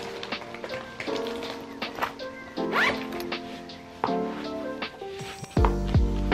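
Background lo-fi music with soft held chords; a deep bass line comes in near the end. About three seconds in, a bag zipper is drawn once in a short rising zip.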